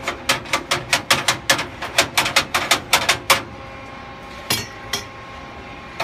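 Rapid tapping on the front of a Tennsco steel vertical file cabinet, about six sharp metallic knocks a second for the first three seconds, then two more a little later, with the steel ringing faintly underneath. The tapping is meant to free a stuck lock bar.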